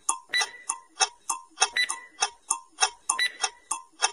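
Clock-ticking countdown timer sound effect, several quick sharp ticks a second, some with a short ring, counting down the time to answer a quiz question.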